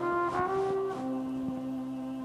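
Trumpet playing a slow melody, a few notes in the first second then one held note, over sustained keyboard chords.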